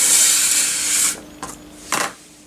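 Plastic model-car body parts being handled and rubbed together, a rough scraping rub lasting about a second, followed by two light clicks.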